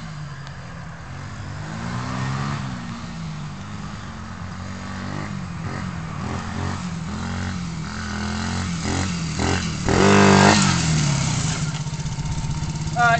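110cc pit bike engine revving up and down as it is ridden through long grass, its pitch rising and falling with the throttle. It grows louder as the bike approaches and is loudest about ten seconds in, when it comes up close.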